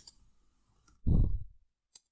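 Computer keyboard keys clicking as a few characters are typed, with a short wordless voice sound about a second in, as loud as speech.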